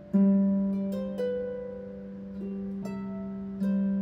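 Solo harp playing a slow tune: a low bass note plucked firmly and left ringing, with higher melody notes plucked above it about once a second, each ringing on and fading. A second firm bass pluck comes near the end.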